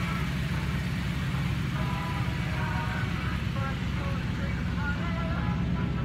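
A vehicle engine idling, a steady low hum, with faint voices in the distance.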